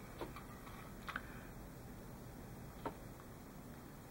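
Faint, sharp clicks as a hobby knife blade cuts through the tabs of a thin brass photo-etch fret, freeing small circular mesh parts: one click about a quarter second in, a quick pair just after a second, and one more near three seconds.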